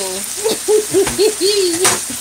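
A pan of pork and tomato sauce sizzling steadily, under a person's voice making a string of short rising-and-falling sounds, with one sharp click near the end.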